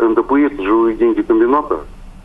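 A man speaking over a telephone line, his voice thin and cut off at the top, with a short pause near the end.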